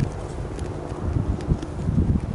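Mountain bike rolling over a rough, sandy and rocky dirt trail: irregular low knocks and rattles as the bike and its mounted camera are jolted over bumps, with a few sharp clicks.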